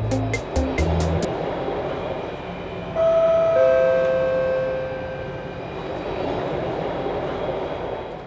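Background music with a beat stops about a second in, giving way to the running noise inside a moving MRT train carriage, with two steady tones coming in around the middle and lasting a couple of seconds.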